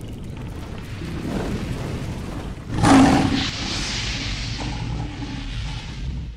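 Cinematic logo-intro sound effects: a low fiery rumble that builds, a sudden loud boom about three seconds in, then a sustained hissing rumble.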